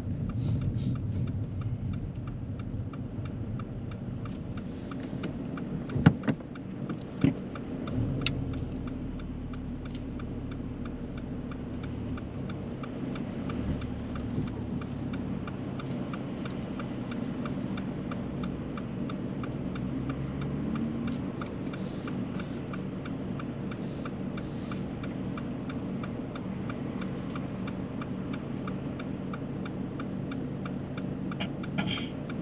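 Car engine running, heard from inside the cabin while driving, with the turn-signal indicator ticking at an even rhythm throughout. A few sharp knocks come about six to eight seconds in, the first one the loudest, and the engine note shifts in pitch briefly past the twenty-second mark.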